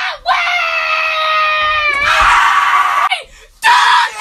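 A person screaming: one long, high held scream that sags slightly in pitch, turns harsh and raspy about two seconds in and breaks off after about three seconds. Another loud yell starts just before the end.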